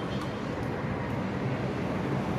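Steady outdoor background noise: an even hiss with a low rumble, like distant traffic, holding at one level without any distinct events.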